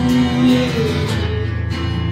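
Acoustic guitars playing a slow rock ballad live, an instrumental stretch between sung lines, with a held note that ends about a second in.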